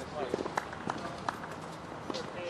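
Outdoor tennis court between points: a few sharp taps at irregular spacing, with faint voices in the background.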